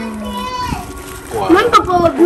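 People's voices: one long held vowel sound about half a second long, then talk starting about one and a half seconds in.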